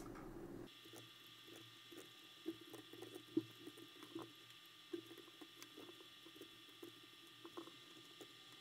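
Faint, irregular small clicks of a computer mouse and keyboard over a faint steady high-pitched hum, close to silence.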